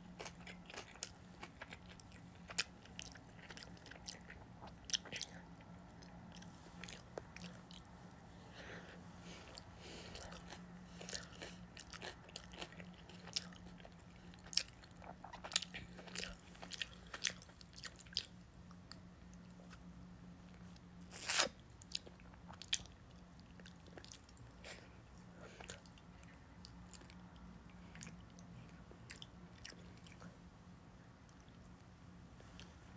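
Close-up mouth sounds of a person chewing sushi: soft wet clicks and smacks, frequent through the first eighteen seconds or so and sparser after, with one louder click about twenty-one seconds in. A faint steady hum runs underneath.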